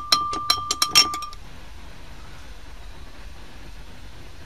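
Glass beaker clinking: about eight quick clinks in the first second and a bit, the loudest near the end, over a clear ringing tone of the glass. After that only a faint steady hiss remains.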